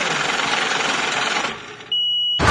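A dense, mechanical-sounding noise effect in a hip-hop track's intro, spread evenly across all pitches. It fades out about a second and a half in, and a steady high beep starts right at the end.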